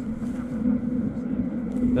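Dirt bike engine idling with a steady low hum.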